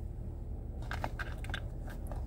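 Low steady hum of a car engine idling, heard from inside the cabin. From about a second in come a run of short crackling handling noises as yarn and packaging are handled close to the microphone.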